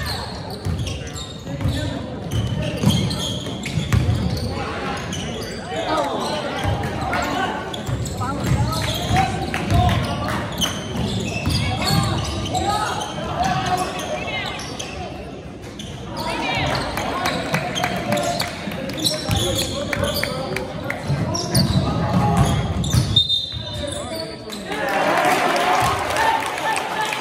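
Basketball dribbled on a hardwood gym floor, with repeated low thumps, under the voices of spectators and players talking and calling out.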